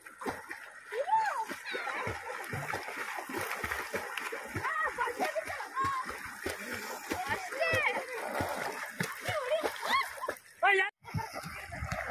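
Swimmers splashing in open lake water, with arms and legs repeatedly slapping and churning the surface, over a steady mix of distant voices and children's shouts. The sound drops out briefly about eleven seconds in.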